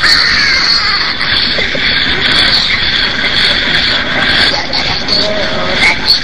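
A harsh, raspy screeching voice sings or wails without a break, wavering in pitch. It is meant to sound like tormented souls screaming in hell.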